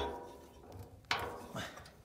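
Two sharp metallic clicks about a second apart, each ringing briefly, from the hardware of a steel pad-mounted transformer cabinet being unfastened by hand.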